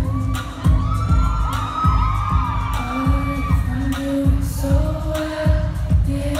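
Live pop song recorded from within the audience: a female singer over a band with a steady kick-drum beat about twice a second and held low notes. High, wavering voices rise over the music in the first half.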